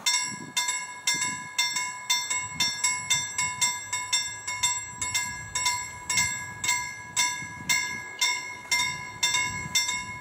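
Level crossing warning bell starting up and ringing in a steady rapid strike, about two strokes a second: the crossing has activated for an approaching train. A low train rumble begins to build near the end.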